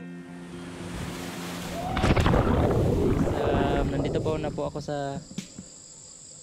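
Wind rushing over a helmet camera's microphone, growing louder, then a sudden loud splash into water about two seconds in, followed by churning water and voices calling out. Near the end it falls to a quiet, steady chirping of insects.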